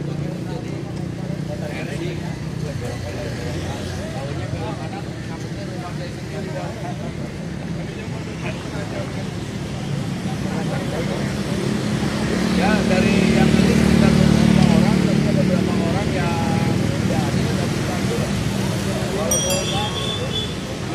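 A group of people talking among themselves, several voices at once, over a steady low engine drone from road traffic that grows louder for a few seconds in the middle.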